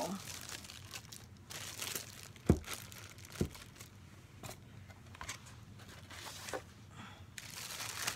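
Snow globe packaging being unpacked: styrofoam and box packing crinkling and rustling in short bursts, with two sharp knocks about a second apart a third of the way in.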